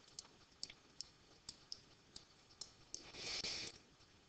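Faint, irregular light clicks of a stylus tapping on a tablet screen while words are handwritten, roughly two a second, with a brief soft hiss a little after three seconds in.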